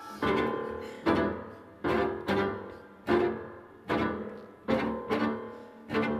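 Live ensemble music with low bowed and plucked strings, driven by a sharply accented note that recurs about every 0.8 seconds and dies away each time.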